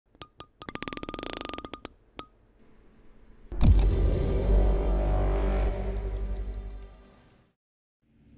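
Logo-intro sound design: a few sharp clicks and a quick run of rapid ticks in the first two seconds, then a sudden loud impact about three and a half seconds in, with a deep boom and a long ringing tail that fades away over about four seconds.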